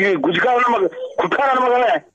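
Speech only: a voice talking on a recorded phone call, with the narrow sound of a telephone line.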